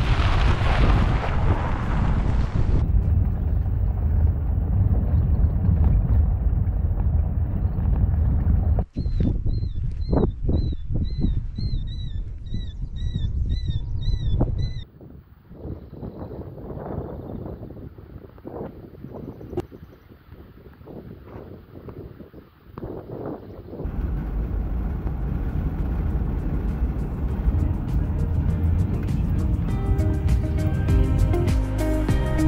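Wind buffeting the microphone as a steady low rumble, broken off by sudden cuts. For about six seconds in the middle a bird calls over and over, about two short high chirps a second. A quieter stretch with a few soft knocks follows, then the wind rumble returns.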